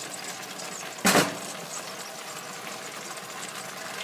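A steady kitchen hum with one short clunk about a second in.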